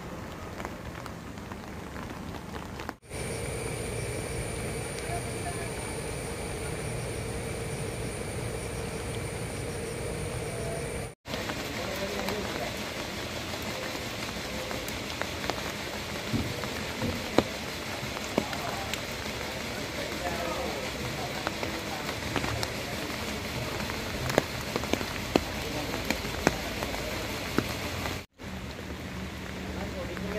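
Heavy rain falling on floodwater and leaves: a steady hiss with sharp drop taps, which come more often in the second half. The sound cuts out briefly twice, about three and eleven seconds in, and between those cuts a faint steady hum sits over the rain.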